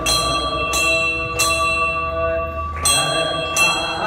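A metal bell struck again and again, mostly about every three-quarters of a second with one longer pause, its steady ringing tones carrying over from one stroke to the next.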